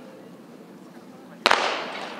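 Starter's pistol fired once, about a second and a half in: a single sharp crack with a short echo that signals the start of a sprint race. Before it there is only low background.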